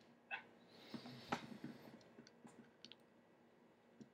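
Faint clicks and small taps of metal parts being handled as a copper tube vape mod and a 510 voltage tester are fitted together, the sharpest click about a second and a half in and a few lighter ticks after it.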